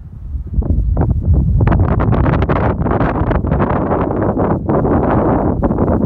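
Wind buffeting the phone's microphone as a loud, rough rumble that swells about half a second in and eases near the end.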